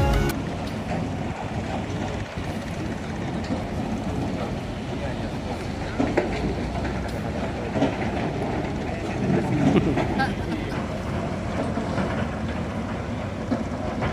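Steady rumbling outdoor noise over an earthworks site, from wind on the microphone and distant heavy machinery, with a brief faint voice in the middle.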